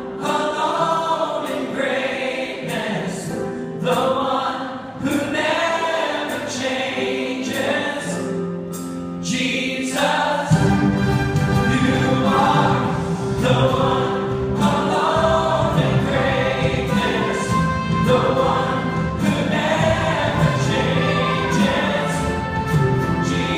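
Church choir and worship band, with acoustic guitar, performing a gospel song live. About halfway through, the accompaniment fills out with a deeper, fuller low end and the music gets a little louder.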